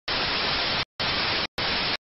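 Untuned television static hissing in three abrupt bursts, the first about a second long and the next two shorter, each switching on and off with a click.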